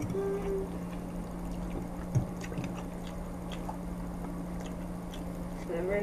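Quiet eating sounds: spaghetti slurped up from a fork, then chewing with a few faint clicks and a soft knock about two seconds in.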